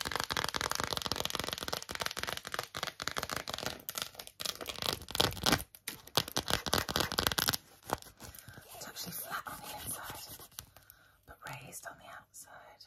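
Long acrylic nails rapidly tapping and scratching on ridged, metallic-finish phone cases, a dense stream of clicks and scrapes. About seven and a half seconds in it thins out to sparser, quieter taps and scratches.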